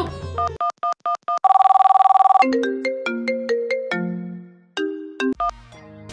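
Mobile phone call sound effects. A few short electronic beeps come first, then about a second of rapid trilling ring, then a short electronic ringtone melody of separate notes.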